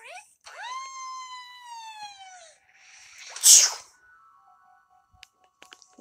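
Cartoon soundtrack played through a screen's small speaker. A long held tone rises, then slowly falls. A loud, short hissing burst comes about three and a half seconds in, and then faint steady music notes.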